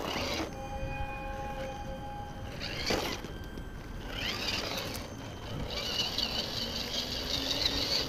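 Electric motor and gearbox of a Tamiya CR-01 RC rock crawler whining as it crawls, holding a steady pitch at first, then rising and wavering higher as it speeds up from about four seconds in. A single knock about three seconds in.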